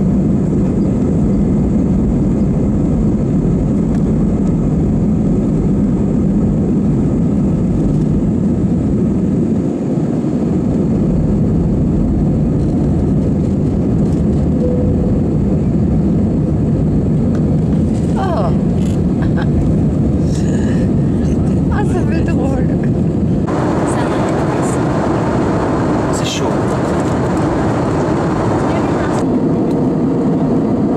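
Cabin noise of an Airbus A320-family jet on its takeoff roll and initial climb: a loud, steady engine and airflow rumble. About three-quarters through, a brighter hiss joins the rumble for several seconds.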